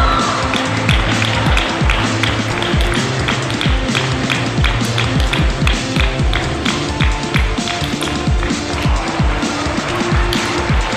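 Background music with a steady, driving beat and held notes over it.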